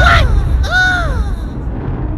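A comic sound effect: a sudden loud, deep boom that rumbles and fades away over about two seconds, with two high wailing cries that rise and then fall near its start.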